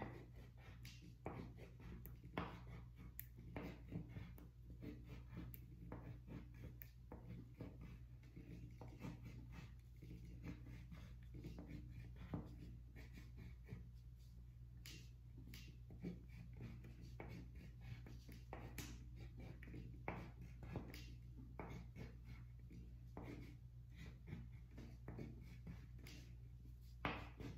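Faint, quick strokes of a pen drawing triangles on paper clipped to a clipboard: irregular light ticks and scratches, a few a second.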